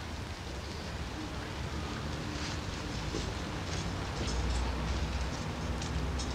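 Winter street ambience: a steady low traffic rumble under a hiss, growing louder about four seconds in, with a few faint knocks.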